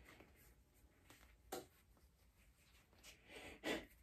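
Mostly quiet handling of a foam flip-flop sole and its strap as the strap plug is forced into the sole's hole, with a faint click about a second and a half in and a short, louder rustle near the end.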